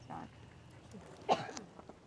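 Mostly quiet, with one short spoken word about a second in.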